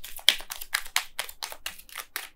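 Oracle cards being shuffled by hand: a fast run of sharp card-on-card slaps, about eight a second, stopping at the end.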